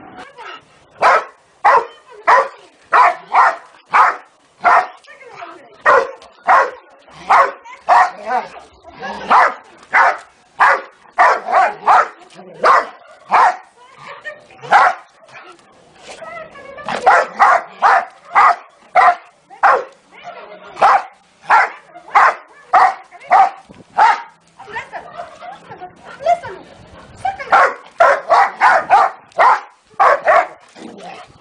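Large black dog barking over and over at a rooster, about two barks a second, with a short lull about halfway and another shortly before the end.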